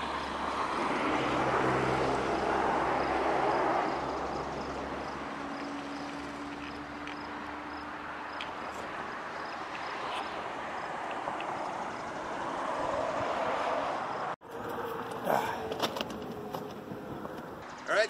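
Outdoor road-traffic noise: a vehicle's engine hum and tyre noise swell and fade over the first few seconds, and another passing swell comes near the end. A few sharp clicks follow.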